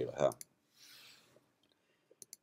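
A spoken word, then a faint click of a computer keyboard as a value is typed in, followed by a brief soft hiss about a second in and near silence.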